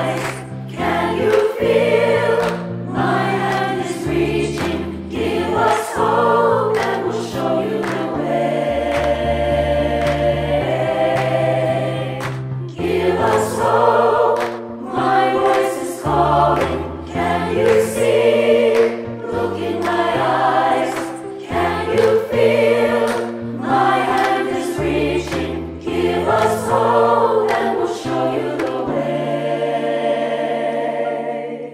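A virtual choir of children and adults, each voice recorded at home and mixed together, singing in harmony. The voices move through phrases of a second or two over sustained low notes.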